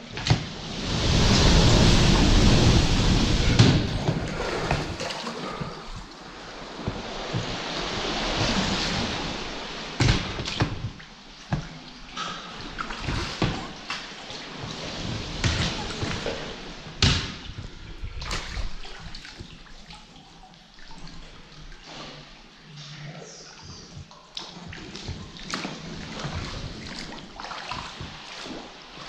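Seawater sloshing and lapping in a sea cave around an inflatable dinghy, with two loud rushing surges of swell in the first nine seconds and then scattered sharp drips and splashes.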